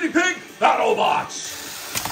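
A man's voice in the first moment, then a loud, harsh, noisy burst about half a second in, like a shouted or distorted announcement. It is followed by a fainter steady high hiss.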